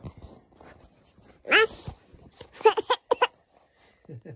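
A high-pitched squeal about a second and a half in, followed a second later by a quick run of four or five short, sharp yips.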